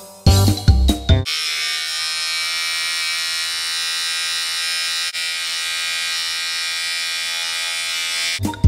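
A small electric hair clipper buzzing steadily, held with its blade at the nostril to trim nose hair, starting about a second in and dipping briefly about five seconds in.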